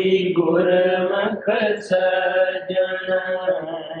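Devotional chanting: voices holding long, steady notes with only brief breaks between phrases.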